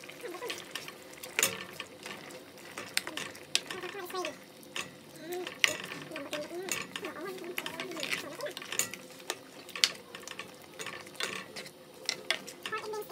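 A slotted spoon stirring a thick beef-and-bean stew in a stainless steel pot, giving irregular light knocks and scrapes against the pot and wet slopping of the stew.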